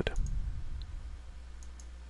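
Faint computer mouse clicks over a low steady hum: a few short ticks, two of them close together near the end.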